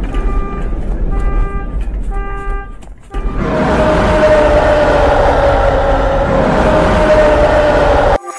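Edited sound effects: about four short horn-like toots over a rumble, then, after a brief dip about three seconds in, a long loud rushing noise with a steady whistling tone that falls slightly.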